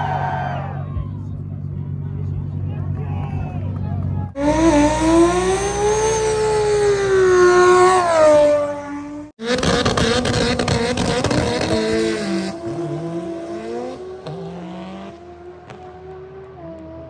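2JZ inline-six engines heard across quick cuts: first a steady idle, then about four seconds in an engine revving high and holding through a burnout, its pitch rising and falling with tire squeal. After a cut near the middle, a car launches hard and its engine note fades as it runs away down the drag strip.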